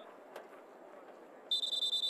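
Faint stadium ambience, then about one and a half seconds in a referee's whistle starts a steady, high, loud blast.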